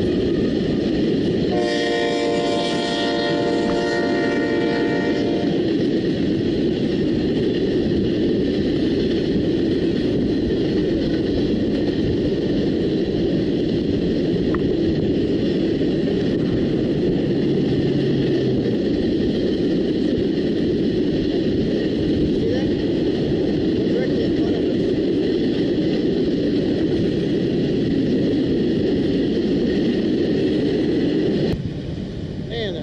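A train passing close by with a steady, loud rumble that lasts the whole stretch. Its horn sounds once, starting about a second and a half in and holding for about four seconds.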